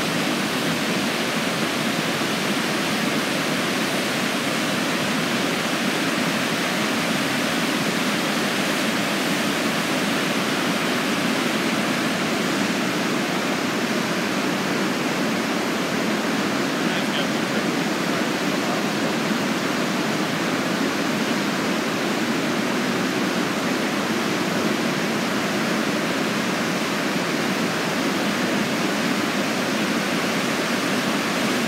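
Niagara River rapids: a steady, unbroken rush of white water.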